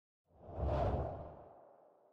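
A single deep whoosh sound effect for an animated logo reveal, swelling in about a quarter second in, peaking just under a second in, then fading away slowly.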